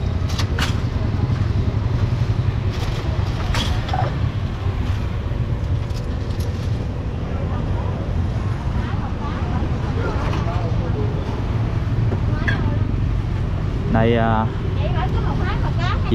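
Steady low rumble of street traffic, with a few sharp clinks of utensils on bowls in the first few seconds. A brief voice comes in near the end.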